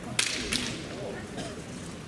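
Two sharp clacks of bamboo shinai (kendo swords) striking, about a third of a second apart, near the start.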